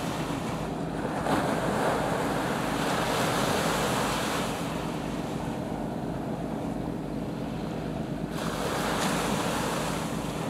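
Wind rushing over the microphone with the wash of sea waves, swelling for a few seconds, easing off, then rising again near the end.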